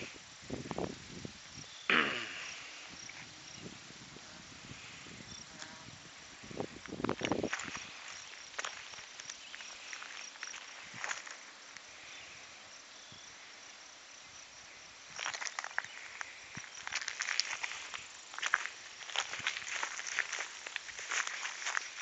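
Faint outdoor ambience with a thin, high, steady insect chirping. Scattered rustling and crunching come in a few times and grow busier from about fifteen seconds in: footsteps on a dirt path and handling of the camera.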